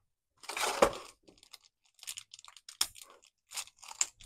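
Clear plastic blister packaging and a small plastic bag being handled: a crackling burst about half a second in, then a scatter of short crinkles and clicks.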